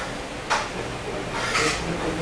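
A woman's two short, breathy gasps of amazement, about half a second in and again near the end, over a steady low room hum.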